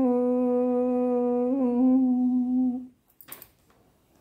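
A woman's voice holding one long, steady final note of a devotional song, with a slight waver partway through, ending a little before three seconds in. A brief rustle follows.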